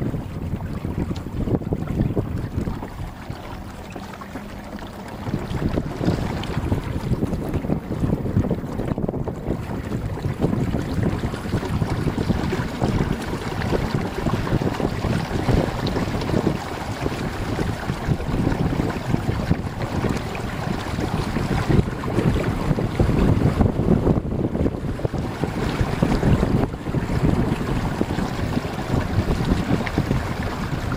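Wind buffeting the microphone over the rush and splash of water along the hull of a Hobie trimaran sailing kayak under sail. It eases briefly a few seconds in, then picks up again.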